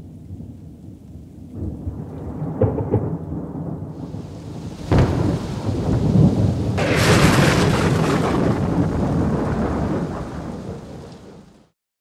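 Thunderstorm sound effect: rain with rolling thunder, a sharp thunderclap about five seconds in as lightning strikes, then a long loud rumble that fades out near the end.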